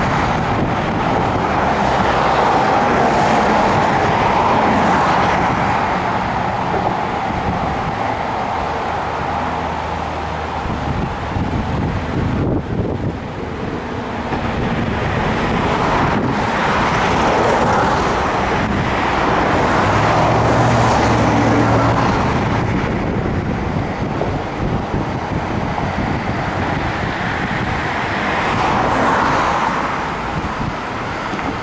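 Road traffic passing close by, vehicles swelling and fading one after another every few seconds over a steady rushing noise, with an engine hum briefly heard about two-thirds of the way through.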